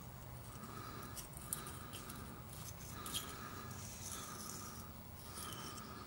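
Faint, repeated scraping strokes of a razor blade on the rear differential housing's metal mating flange, taking off the remnants of the old gasket sealant.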